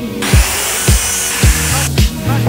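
Background music with a steady beat, over which a power tool runs for about a second and a half and then cuts off abruptly just before the end.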